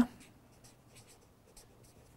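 Felt-tip marker writing a word on paper: a run of faint, quick strokes.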